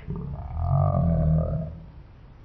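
A man's low, drawn-out vocal 'aaah', held for about a second and a half and then fading.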